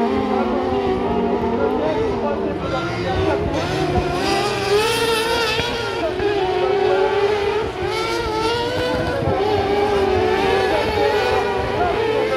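Several kart cross buggy engines racing on a dirt track, overlapping, their pitch rising and falling with throttle and gear changes as they pass and pull away.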